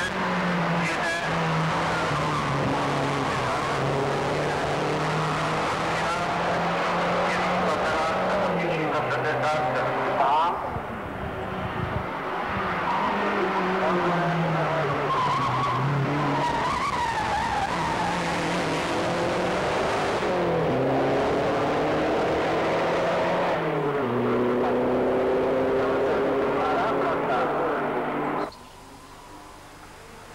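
Lancia Delta hillclimb car's engine being driven hard. The pitch climbs and then drops again and again as the car shifts through the gears and brakes for bends. Near the end the engine sound cuts off abruptly.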